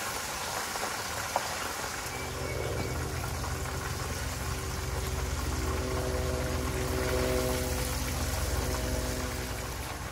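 Hot oil sizzling steadily as a butterflied scorpion fish deep-fries in a pan on a portable gas burner. A steady low motor hum builds about two seconds in and fades near the end.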